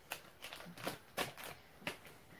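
About six faint, short clicks and rustles spread over two seconds, from a hand handling a ResMed P10 nasal pillows CPAP mask against the pillow.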